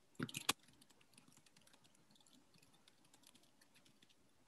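Typing on a computer keyboard: a few sharp key clicks at the start, then a quick run of soft key taps.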